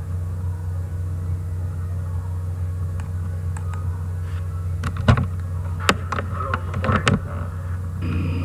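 A steady low hum with a few sharp clicks and knocks between about five and seven seconds in.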